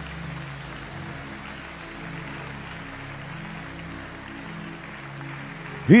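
Soft church background music of steady held low chords, under an even wash of crowd and room noise from the hall.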